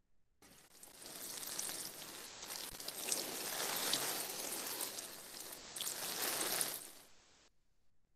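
Recorded sound effect of running water, lasting about seven seconds, from a textbook listening exercise on household chores, played back over a video call.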